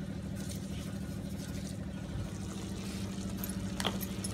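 A steady low machine hum, like a fan or motor running, with one sharp clink near the end.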